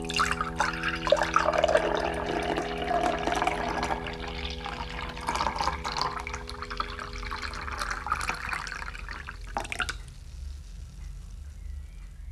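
Milk pouring from a carton into a drinking glass: an irregular splashing stream that stops about ten seconds in, once the glass is full.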